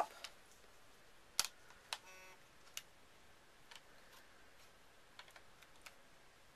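Hard plastic phone case clicking as its polycarbonate shell and rubbery TPU bumper are snapped and pressed together around an iPhone 6 Plus: a few separate soft clicks, the loudest about a second and a half in, with a short squeak just after two seconds.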